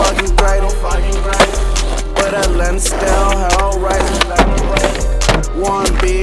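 Hip-hop beat with deep bass hits and a wavering melody, with skateboard sounds of rolling and board clacks mixed in.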